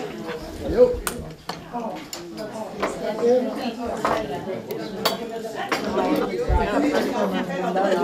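Many people chatting at once over coffee and cake, with cups, plates and cutlery clinking now and then.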